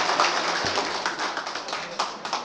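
Audience applauding: a spread of hand claps that dies away steadily.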